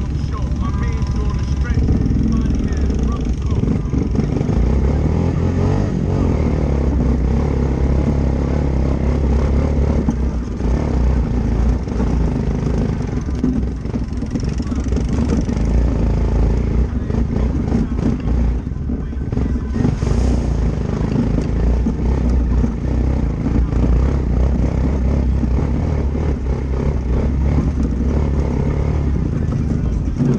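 ATV engine running continuously under the rider as it climbs a dirt trail, with a low steady drone whose loudness rises and dips with the throttle.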